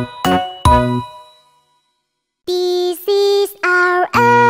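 Cartoon children's-song music. A song ends on two struck notes that ring out and fade to silence. After a short gap the next song's intro begins with three short held notes.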